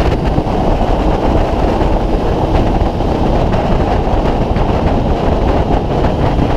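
Honda CB600F Hornet's inline-four engine running steadily at a highway cruise of about 85–90 km/h, mixed with constant wind and road rush at riding speed.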